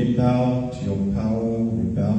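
A man's voice through a microphone and PA, praying aloud in long, drawn-out, chant-like phrases whose words are not recognisable.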